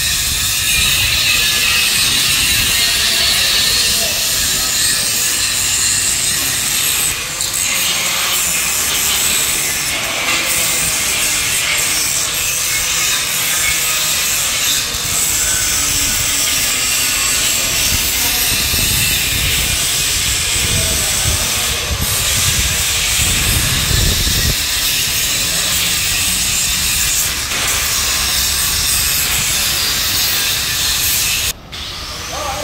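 Handheld angle grinder cutting through steel tubing: a steady high whine over a continuous hiss that runs without a break.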